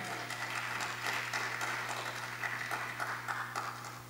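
Congregation applauding, the clapping dying away near the end.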